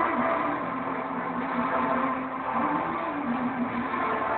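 Live singing over a backing track through a small venue's PA: a long held vocal note, wavering in pitch, over the music.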